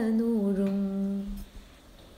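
A woman's voice holding one long sung note at the close of a chanted line of Malayalam verse, dipping slightly in pitch at the start, then steady, and fading out about a second and a half in.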